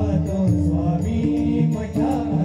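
Marathi bhajan music: pakhawaj and tabla keep a steady, even rhythm under harmonium, with sung chorus voices coming in around the start and end.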